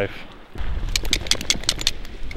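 A quick run of about eight sharp clicks and rattles within a second, over a low rumble of wind on the microphone.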